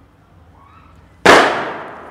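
A single sudden loud bang a little over a second in, its echo dying away over most of a second.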